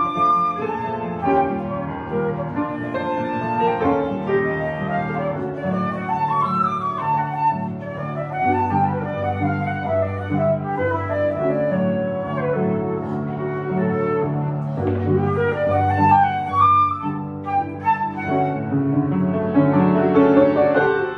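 Silver concert flute and upright piano playing a classical piece together, a flowing melody over a steady piano accompaniment. In places the flute rests and the piano carries on alone.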